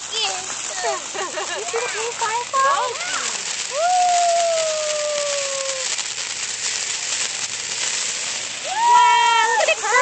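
Ground fountain firework spraying sparks: a steady rushing hiss with faint crackle that sets in about a second in and keeps going.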